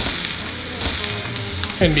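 Ground beef sizzling in a hot frying pan as it is dropped by hand onto sautéing peppers, onions and garlic; a steady frying hiss.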